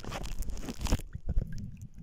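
Lake water splashing and sloshing close to the microphone, with knocks from a handheld camera being moved. About a second in the sound turns muffled and dull as the high end drops away.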